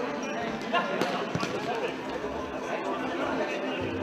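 Spectators chatting close by in an indoor sports hall, with one sharp knock about a second in.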